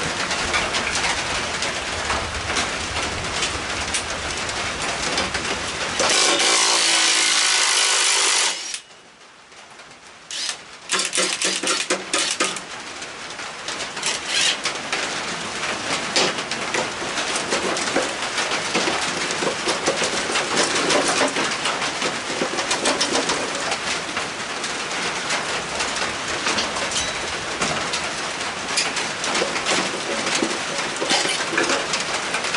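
A loud, even aerosol hiss lasting about two and a half seconds, about six seconds in: penetrating spray being used to wet down the mower blade's seized bolt. From about eleven seconds on, a cordless impact driver works at the blade nut in bursts. A steady patter of rain on the roof runs underneath.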